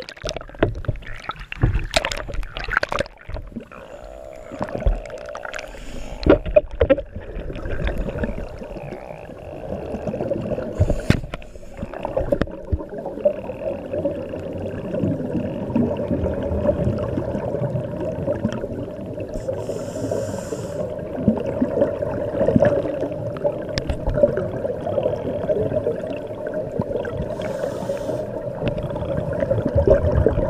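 Water sound picked up by a diver's camera in an underwater housing, with splashes and knocks against the housing at the surface for the first dozen seconds. After that comes a steady, muffled underwater rumble with some gurgling as the dive goes below the surface.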